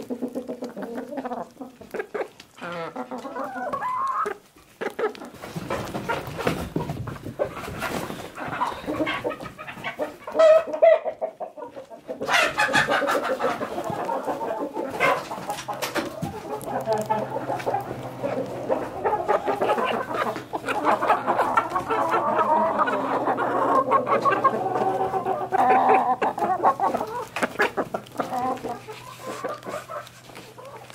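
A flock of hens clucking continuously while they feed, with many quick sharp taps of beaks pecking at crisp pork crackling pieces on the ground.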